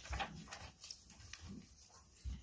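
Faint, short crunching and rustling sounds, several in a row: a pony munching hay, with a picture-book page being turned.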